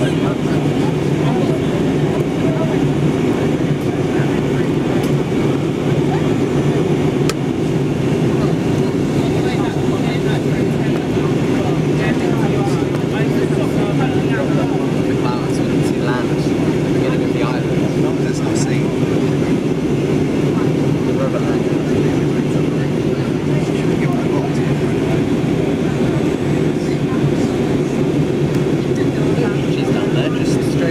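Steady cabin noise inside an Airbus A320-family airliner during its descent: an even, low drone of the jet engines and the air rushing past the fuselage, heard from a window seat.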